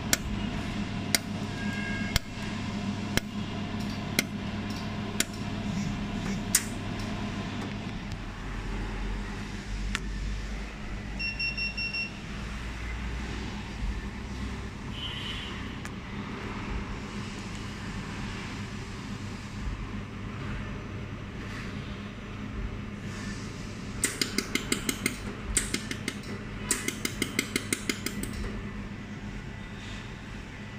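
Desktop welding machine running with a steady hum. It fires sharp single clicks about once a second for the first several seconds, gives a short run of electronic beeps around the middle, and fires rapid strings of clicking pulses near the end.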